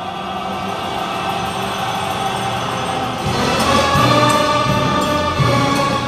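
Orchestra with a large string section playing sustained chords that grow steadily louder. A fuller, brighter layer with low pulsing notes underneath comes in about three seconds in.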